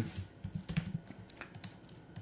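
Typing on a computer keyboard: a quick, irregular run of light keystrokes.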